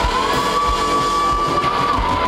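Live rock band playing: one high electric-guitar note is bent up slightly, held steady, and let back down near the end, over the drums.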